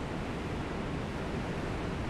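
Steady rush of sea surf breaking on a beach.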